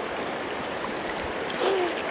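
A river flowing steadily past, a constant rush of moving water. A short voice sound is heard near the end.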